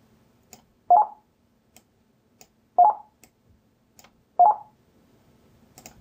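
Three short computer interface beeps, about a second and a half to two seconds apart, one for each keyword dropped onto a tag, with faint mouse clicks between them.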